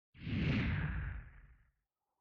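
A single whoosh sound effect that starts suddenly and fades away over about a second and a half.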